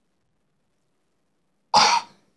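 Near silence, then a single short, loud cough from a boy near the end.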